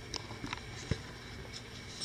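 Quiet background noise with a few faint clicks and a single soft low thump just under a second in.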